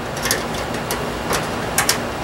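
Thin steel suspension cable ticking and scraping against the sheet-metal housing of a light fixture as it is threaded through a hole, a few short clicks over a steady background hum.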